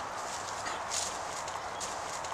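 Faint rustling steps through dry grass and fallen leaves over a steady outdoor hiss.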